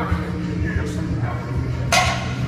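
Music with steady low notes, and one sharp knock near the end.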